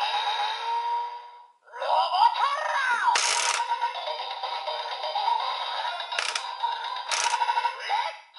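DX Tiguardora toy's built-in speaker playing its electronic music and synthesized voice, tinny with no bass. The sound dies away about a second and a half in, then a new sequence starts with a voice and three short hissing sound effects.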